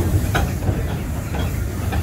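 Theme-park steam train rolling along the track with a steady low rumble, the wheels clicking over rail joints about once a second.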